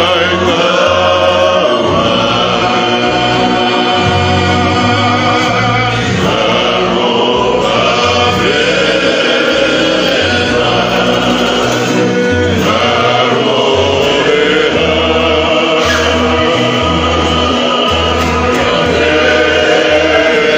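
A group of men singing a Tongan hiva kakala (love song) together, accompanied by acoustic guitars, with a low bass line moving underneath.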